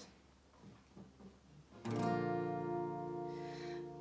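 Acoustic guitar: after about two seconds of near quiet, one strummed chord rings out and sustains, slowly fading.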